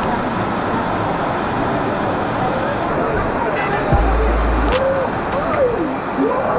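Heavy, steady rush of water from a waterfall pouring down close by, falling water and spray hitting the camera. About three and a half seconds in, background music comes in over it.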